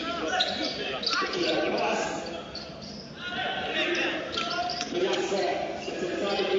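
Live game sound in a gymnasium: a crowd of spectators talking and shouting over a basketball bouncing on the court, with the echo of a large hall.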